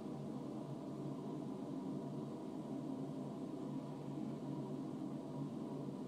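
Steady low hum and hiss of indoor room tone, unchanging throughout.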